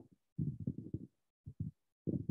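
A man's voice, low and muffled, in a short burst of speech about half a second in, then two brief syllables, with the audio cutting to dead silence in between.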